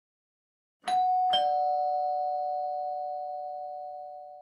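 Two-tone doorbell chime about a second in: a higher note, then a lower one half a second later, both ringing on and slowly fading.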